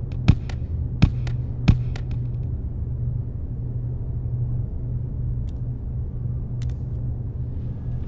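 A small ball bouncing down concrete stair steps, three sharp knocks in the first two seconds with lighter taps between, then going quiet as it rolls off across the tile floor. A steady low hum runs underneath.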